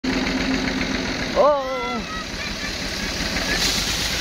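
Tractor engine running while it drags a loaded trolley over by ropes, with a man's shout about a second and a half in. Near the end comes a rushing, rustling crash as the heaped brush tips off.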